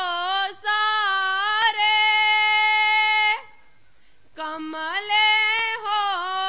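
A young woman singing a slow devotional song alone, with no instruments heard. She holds one long steady note for about a second and a half, pauses for a breath, then sings a line with wavering, ornamented turns.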